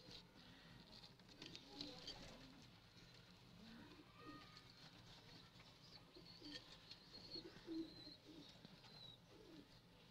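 Domestic pigeon cooing faintly, a series of short, low coos.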